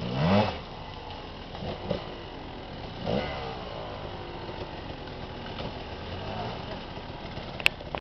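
Enduro dirt bike engines running as the bikes ride up a muddy woodland trail, with a sharp rising rev right at the start and another about three seconds in. A sharp click comes near the end.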